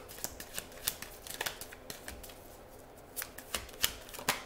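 A tarot deck being shuffled by hand: an irregular run of light card-on-card clicks and flicks, the sharpest few near the end.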